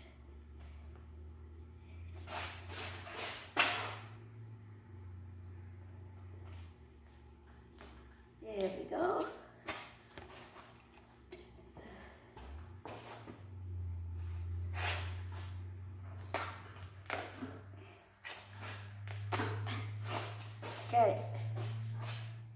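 Duct tape being pulled off the roll in several short bursts, with handling rustles over a low steady hum. There are brief murmurs of a voice about nine seconds in and near the end.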